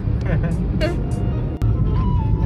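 Steady low rumble of a car's engine and road noise heard from inside the moving car, with brief voices and music over it. A single sharp click comes about one and a half seconds in.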